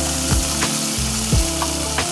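Food sizzling steadily on a hot Blackstone propane flat-top griddle as pancake batter is poured onto it beside frying eggs and sausage patties. Soft background music with sustained low notes runs underneath.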